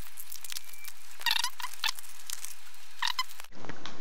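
Protective plastic film being peeled off headphones: a stream of small crackles, with a short squeak about a second in and another near the end.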